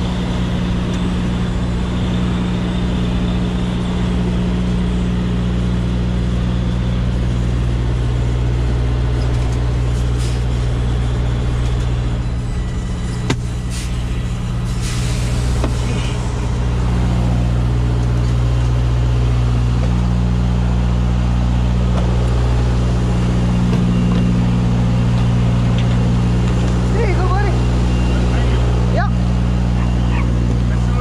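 Semi-truck diesel engine idling steadily, getting a little louder about halfway through, with a brief hiss near the middle.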